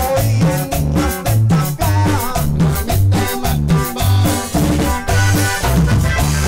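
A live Mexican band plays with drum kit, bass, guitars and accordion in a steady, bouncing beat.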